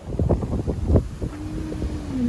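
Gusty wind buffeting a phone microphone: irregular low rumbling surges. A steady low tone starts about two-thirds of the way in.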